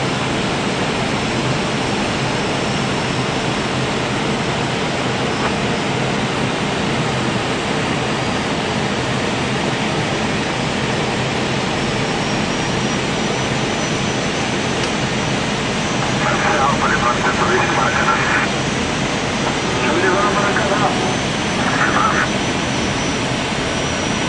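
Steady rushing cockpit noise of an Airbus A319 on final approach: airflow and the jet engines at approach power. A few brief louder crackly bursts come late on.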